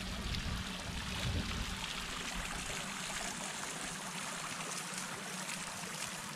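Tiered fountain splashing steadily, water falling from its upper bowls into the basin.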